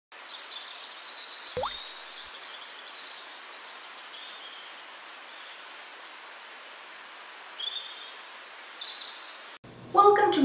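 Birds chirping and twittering in short high calls over a steady hiss, with a brief rising sweep about a second and a half in. The sound cuts off just before the end.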